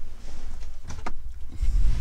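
Low rumble of handling noise as the camera is moved, with a couple of light knocks about a second in and a rustle near the end, where a cushion is moved about.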